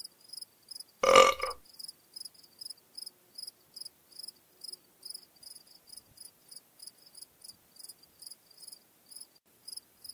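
Crickets chirping, a steady run of short high chirps about three a second. About a second in comes one loud, half-second burp.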